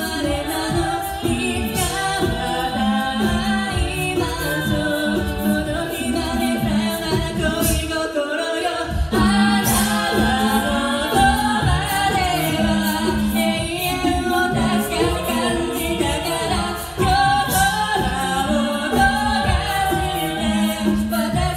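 Six-voice female high-school a cappella group singing a song in harmony into microphones, with a low sung bass line under the upper voices. The bass drops out briefly about eight seconds in.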